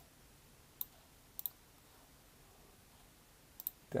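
A few scattered sharp clicks of a computer mouse and keyboard: one at the start, one just under a second in, a quick pair about a second and a half in, and another quick pair near the end.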